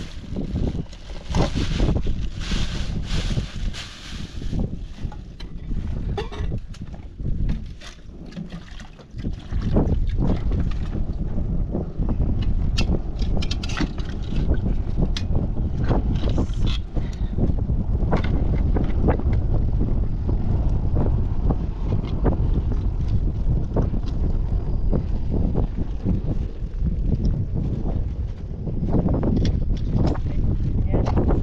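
Plastic bag crinkling and rustling for the first few seconds as potatoes are taken out of it, then from about ten seconds in strong wind buffeting the microphone, a loud steady rumble with scattered small clicks and knocks.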